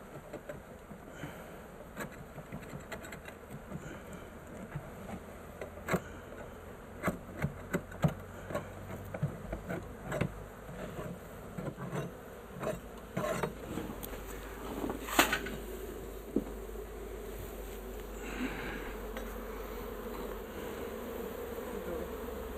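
Honey bee swarm buzzing as it is brushed off its comb onto a sheet, with scattered sharp knocks and scrapes from the work inside the wooden barrel. The buzz grows louder and steadier in the second half as more bees take to the air.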